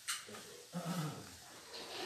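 A short, low vocal sound from a person, brief and unworded, after a quick hiss near the start.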